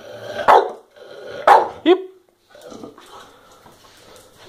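Staffordshire bull terrier barking twice on the command "speak", two short, loud barks about a second apart.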